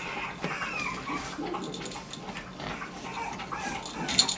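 Puppies making high, wavering whines and little growls as they tug at a plush toy, with soft scuffling between the calls.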